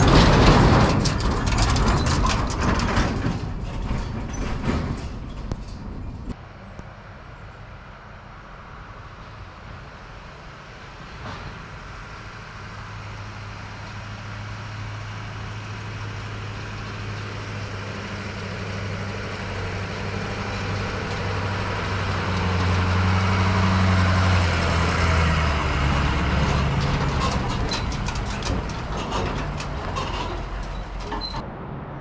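A pickup truck towing a tandem-axle dump trailer drives past on a gravel road, loud at first and fading over a few seconds. After a break, a truck engine's low steady hum comes in and grows louder, peaking a few seconds before the end and then easing off.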